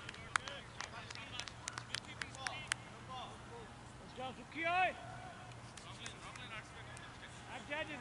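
Voices of players calling on an outdoor cricket field, with a quick run of sharp clicks over the first three seconds and one short shout a little before the middle.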